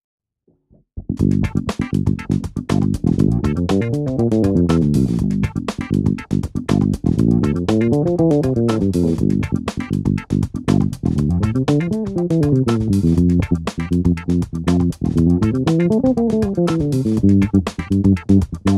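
Electric bass guitar playing fast arpeggio and scale runs over a G minor 7 chord, rising and falling roughly every four seconds, along with a drum backing track. It starts about a second in.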